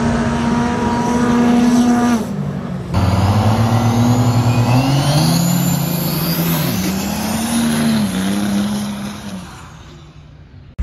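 Diesel pickup engines at a dirt drag strip. First an engine is held at steady high revs, then after a break a truck launches and accelerates away. Its note climbs and drops several times under a high rising whine, and it fades as the truck runs off down the track.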